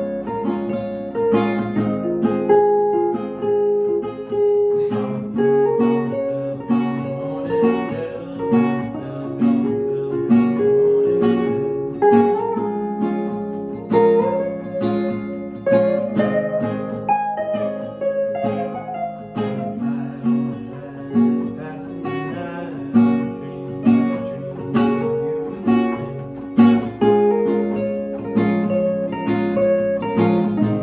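Two guitars playing a song together: a nylon-string classical guitar strumming chords and an electric guitar picking along, with a steady rhythm of strums.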